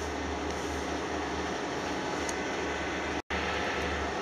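Metal lathe running steadily with no cut being made: a continuous low motor hum with a hiss of machine noise above it. The sound drops out for an instant about three seconds in.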